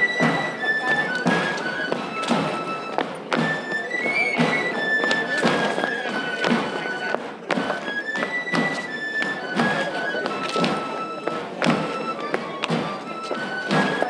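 Pipe and tabor (flauta and tamboril) playing dance music: a single high pipe melody of held, stepping notes over steady drum strokes.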